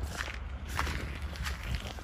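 Footsteps walking on the ground outside, with night insects chirping in the background.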